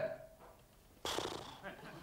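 A man's voice making a throaty, creaky 'ähh' hesitation sound that starts suddenly about a second in and fades away.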